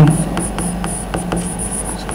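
Chalk writing on a blackboard: a few faint taps from the strokes, with a faint high-pitched chirping that comes and goes throughout, over a low steady room hum.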